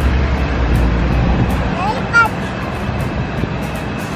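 Wind noise on the microphone: a steady low rumble over a noisy background that eases off a little under two seconds in, with a short child's vocal sound about halfway through.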